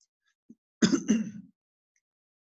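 A man clearing his throat once, a short voiced burst about a second in, with a faint soft bump just before it.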